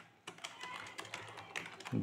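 Typing on a computer keyboard: a quick, fairly faint run of key clicks.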